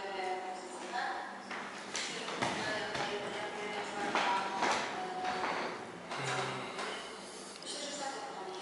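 A recorded interview voice played back through loudspeakers into a large, echoing room, too muffled to make out the words.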